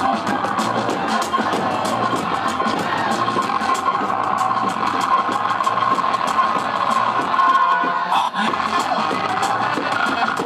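Loud live music with a fast, steady drum beat and a held pitched line over it, played through a street PA.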